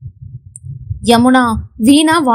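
A woman's voice reading a Tamil novel aloud, beginning about halfway through after a brief pause. The first second holds only a faint, low, irregular rumble with no voice.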